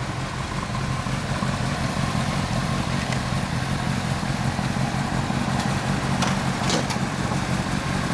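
Inline-four sport motorcycle engine idling steadily, with a few faint clicks over it.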